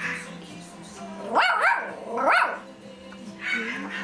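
Toy poodle giving two high-pitched yelps about a second apart, each rising and then falling in pitch.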